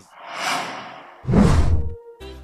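Two whoosh sound effects of a broadcast replay transition: a rising and falling swish, then a louder swish with a deep boom underneath about a second and a quarter in.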